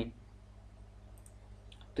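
Low steady electrical hum with two faint clicks from a computer mouse, one about a second in and one shortly before the end.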